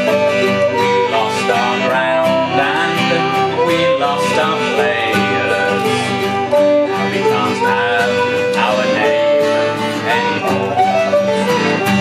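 Live acoustic folk band playing an instrumental passage: a fiddle carries the melody over a strummed acoustic guitar and a second plucked string instrument.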